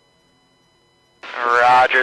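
A faint steady hum, then about a second in a man's voice comes in over a two-way radio channel.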